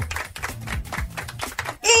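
Rapid, irregular light clicks and taps over a low background hum. Just before the end a woman's voice comes in with a drawn-out hesitant 'eh'.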